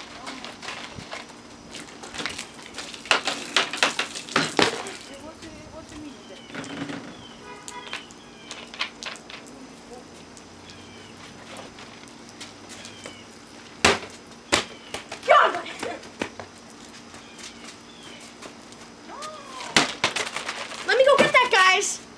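Plastic soda bottles being shaken and handled, with a cluster of sharp knocks a few seconds in and another knock about two-thirds of the way through. A boy's short wordless vocal sounds come near the end.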